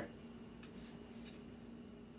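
Quiet room tone with a faint steady hum, and a faint brief rustle a little before halfway as hands handle and pick at a cut block of melted HDPE plastic.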